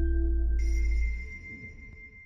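YOUKU logo sting: a bright, chime-like ringing tone enters about half a second in over a low held tone and soft sustained notes, and the whole thing fades away in the second half.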